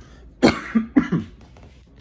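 A man coughs twice, a sudden harsh cough about half a second in and a second one about a second in. He is trying to bring up phlegm that he cannot spit out.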